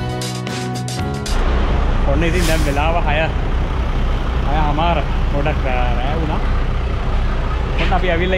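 Background music ends about a second in, giving way to a parked coach's engine idling with a steady low rumble.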